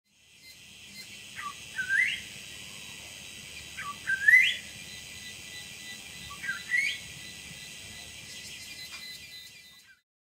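A bird calling three times, about two and a half seconds apart; each call is a short dipping note followed by a rising whistled sweep. A steady high hiss runs underneath.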